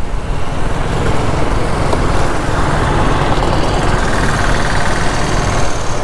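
KTM Duke motorcycle under way: steady wind rush over a helmet chin-mounted microphone, with the engine and tyre noise running underneath.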